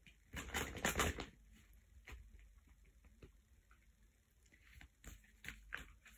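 Oracle cards being handled: a short burst of rustling in the first second, then a few soft clicks and light rustles.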